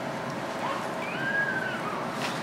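Steady hum of a quiet hall, with a faint, thin high squeak that glides up and down for about a second around the middle.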